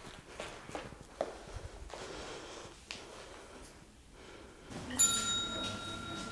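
Soft steps and faint rustles of a dancer walking across a studio floor in ballet slippers, then music starts suddenly about five seconds in with a held high note.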